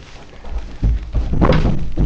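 A few dull thumps, the heaviest and longest in the second half.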